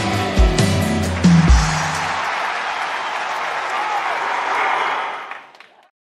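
A dance track ending with a few heavy bass hits in the first two seconds, then an audience applauding. The applause fades out near the end.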